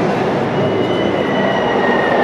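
War sound effects played loud through an arena PA: a dense rumble, with a thin whistle that starts about half a second in and slowly falls in pitch, like an incoming shell.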